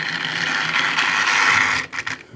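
Hornby Britannia model steam locomotive's electric motor and gears whirring steadily as it runs along the track, brought back to working order after years of not running. The whirr cuts off suddenly just before the end.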